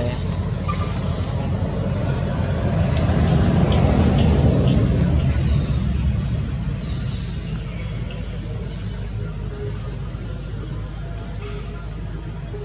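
A low, choppy rumble that swells about three seconds in and eases off again by about seven seconds.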